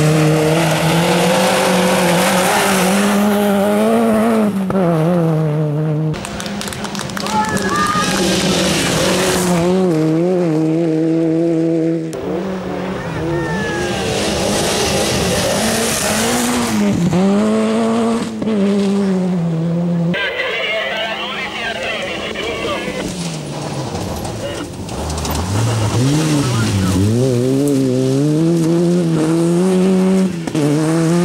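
Rally car engine revving hard on a dirt hillclimb, its pitch climbing and dropping again and again with each gear change and lift of the throttle, with gravel noise from the tyres. The sound breaks off abruptly three times as one pass gives way to the next.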